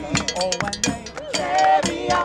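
Cowbell struck with a drumstick in quick, repeated strokes, with a pitched melody line from the band over it.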